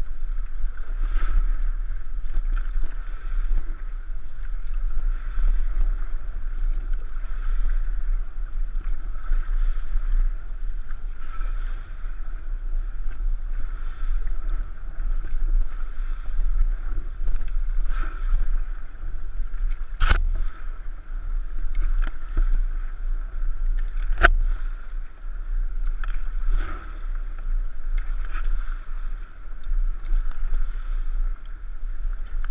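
Raft paddles stroking through calm river water, a soft swish and splash every second or two, over a steady low rumble of wind on the microphone. Two sharp knocks come about two-thirds of the way through.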